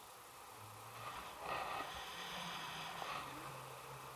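Air rushing past the camera during a paraglider flight, a faint steady hiss that swells into a louder rush for about a second and a half in the middle.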